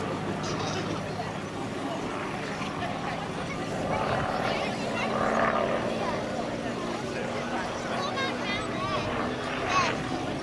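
Hawker Hurricane's Rolls-Royce Merlin V12 engine droning steadily as the fighter flies its display overhead, a little louder around the middle, with people's voices close by.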